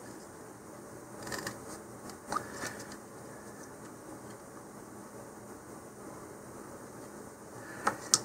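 Faint rustling and scratching of hands working a small plastic tube of modelling putty along the joint of a cardboard rocket body tube, over low room noise, with a short click at the end as the tube is set down on the cutting mat.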